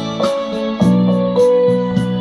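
Casio CTK-6000 synthesizer keyboard playing sustained electric-piano chords with a melody line on top, new chords struck about every half second, over a steady ticking hi-hat beat.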